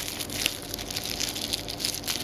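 Bubble-wrap packaging crinkling and crackling in the hands as it is pulled open, a run of irregular small crackles.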